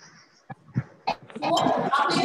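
A few soft clicks, then about a second and a half in a group of children's voices calling out loudly together, answering the teacher.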